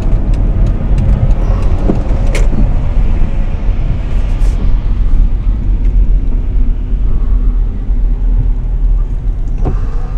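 A car driving on a wet road, heard from inside the cabin: a steady low rumble of tyres and engine, with one sharp click about two and a half seconds in.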